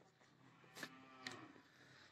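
Near silence, with one faint pitched call of under a second about halfway through and a couple of soft clicks.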